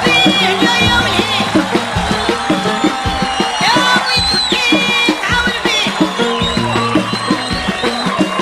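Moroccan folk music: a fast, steady drum beat with a high, wavering melody line that bends and slides above it.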